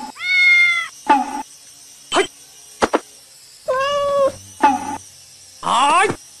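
A cat meowing several times: a long meow near the start and another about four seconds in, with short sharp calls and clicks between them and a rising call at the end.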